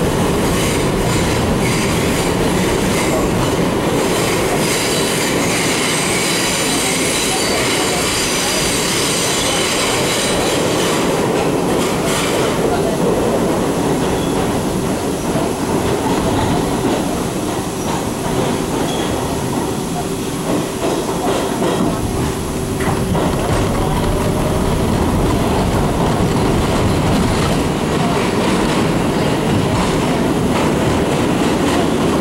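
A 1985 R62A subway car running through a tunnel, heard from inside the car: a continuous loud rumble of wheels on rail and rail-joint clatter. High wheel squeal rings over it for the first twelve seconds or so, then cuts off sharply.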